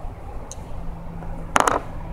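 Dice shaken in cupped hands: a short quick rattle of clicks near the end.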